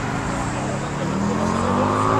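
A car engine accelerating, its pitch rising steadily over a second or so, over outdoor background noise.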